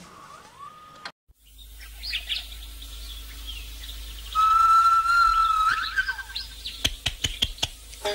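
Birdsong with chirps and calls, and one loud, long, steady whistled note about four seconds in. A run of sharp clicks comes near the end.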